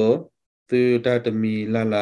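A man's voice speaking in a slow, level, almost chanted tone. One phrase ends just after the start, then after a short break a longer, drawn-out phrase follows.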